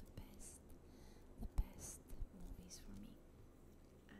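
A woman whispering close to a microphone, with short sharp hisses on her consonants. A low thump about a second and a half in, as her hand knocks the microphone.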